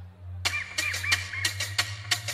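Live band music: a low electric bass note is held, and about half a second in a quick pattern of sharp percussion hits comes in over it.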